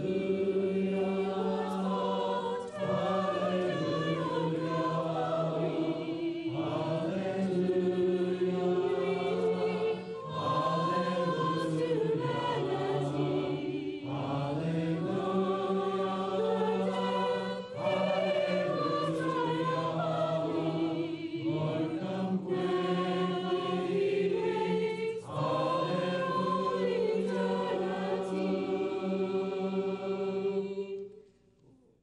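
A mixed choir of men's and women's voices singing a hymn a cappella in parts, in phrases of about three to four seconds with short breaths between them.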